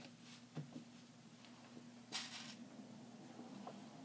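Faint handling sounds of drapery fabric being folded and pinned into pleats: a couple of soft ticks about half a second in, then a short rustle about two seconds in, the loudest moment.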